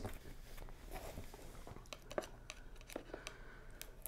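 Faint crinkling and rustling of plastic shrink wrap being worked at on a sealed vinyl LP box set, with a few small clicks and taps of handling.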